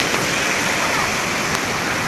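Steady rush of running water from a Stingray surf machine, a standing-wave surf ride that pumps a continuous sheet of water up its sloped surface.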